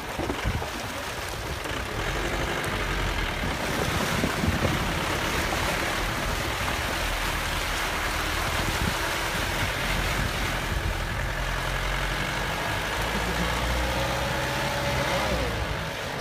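Vehicle wading through a shallow river: water rushing and splashing against the tyres and body over the engine's steady low drone. A faint gliding tone comes in near the end.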